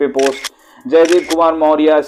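A man speaking, with a brief pause about half a second in.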